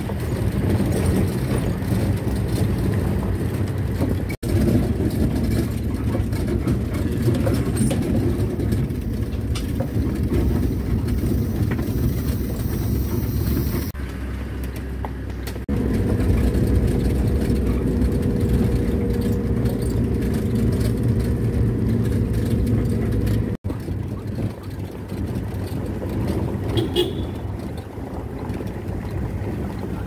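Steady engine and tyre rumble of a vehicle driving on an unpaved gravel road, heard from inside the cab. The sound cuts out for an instant twice, about four seconds in and again past the twenty-third second.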